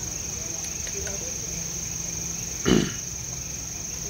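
Steady high-pitched drone of night insects over low background noise, broken by one short, loud burst about three quarters of the way through.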